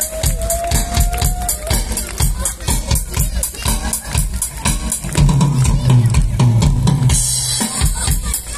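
Live rock band playing: a steady drum-kit beat with bass and keyboard, a held high note in the first second and a half, the bass line coming up louder about five seconds in, and a cymbal wash near the end.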